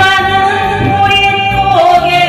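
A man singing a Korean trot song into a microphone over musical accompaniment, holding one long note with vibrato that dips in pitch near the end.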